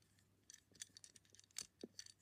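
Faint, scattered clicks and taps of a small plastic toy wheelie bin being turned over in the hand.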